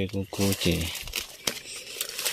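Dry leaf litter crinkling and rustling as someone moves through it, with scattered sharp crackles, one standing out about one and a half seconds in. A person's voice talks briefly over it in the first second.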